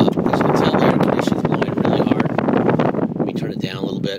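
Loud, rough wind noise on the microphone, starting suddenly and cutting off just before the end.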